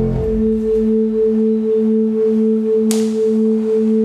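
Electronic music: two steady pure tones an octave apart, pulsing evenly about twice a second, with a single sharp click about three seconds in.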